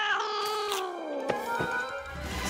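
A cat's long, drawn-out meow sliding slowly down in pitch, over background music, with two short knocks in the second half.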